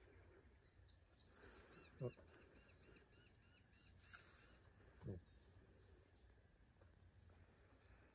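Near silence outdoors, in which a bird gives a quick run of about nine short, high repeated notes, roughly four a second, starting about two seconds in. Two brief low sounds, about two and five seconds in, are the loudest moments.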